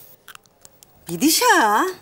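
A few faint clicks, then about a second in a woman's voice gives one short drawn-out utterance, its pitch dipping and rising again.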